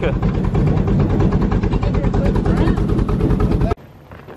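Steady low rumble of a pickup truck on the road, heard from inside the cab with engine, road and wind noise. It cuts off abruptly near the end and gives way to a much quieter background.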